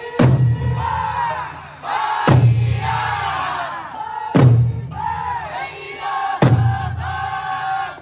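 Eisa drummers striking their large barrel drums together about once every two seconds, four strikes, with the troupe shouting long drawn-out group calls between the beats.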